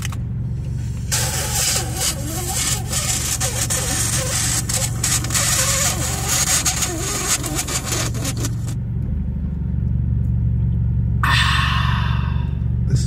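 Car engine running, heard from inside the cabin as a steady low hum that grows louder about nine seconds in. A hiss with small clicks lies over it for most of the first eight seconds, and there is a short burst of hiss near the end.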